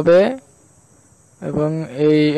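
A man speaking a word, a pause of about a second, then speaking again, over a faint steady high-pitched background tone.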